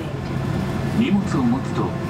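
Cabin safety announcement playing over an airliner's cabin speakers, heard over the steady low hum of the cabin.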